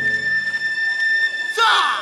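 Festival dance music pauses on one long, steady, high flute note. Near the end, several voices shout a call together, and the drumming starts again just after.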